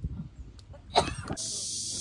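A short sharp voice-like burst, like a cough or exclamation, about a second in. Then, at a cut, a steady high-pitched insect chorus starts suddenly and carries on.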